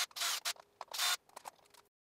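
Scraping and handling noise as a cordless drill and the metal power-supply plate are moved against each other: two short scrapes in the first second, then a few light ticks. The sound cuts off abruptly near the end.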